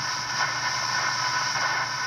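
Steady static hiss from the speaker of a 1964 Arvin eight-transistor AM pocket radio, tuned to the bottom end of the medium-wave dial with no station coming in.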